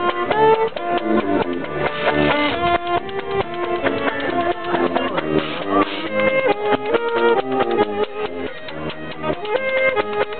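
Traditional jazz band playing an up-tempo tune: a saxophone carries the melody over banjo chords, a walking tuba bass and a washboard beat.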